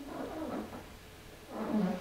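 A man's faint breathing and mouth sounds in a pause between spoken sentences, ending in an in-breath just before he speaks again.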